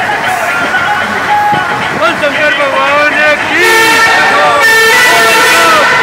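Several people shouting and calling out loudly inside a tunnel, with drawn-out rising-and-falling calls that grow louder in the second half.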